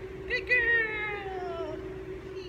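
A high-pitched vocal call: a short yelp, then a longer call that slides down in pitch for about a second, over a steady low hum.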